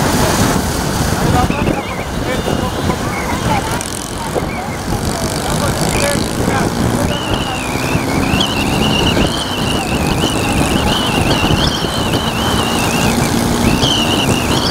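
Traffic noise from cars and motorcycles on a highway, picked up from a moving vehicle, with voices mixed in. From about seven seconds in, a high, wavering, whistle-like tone runs on.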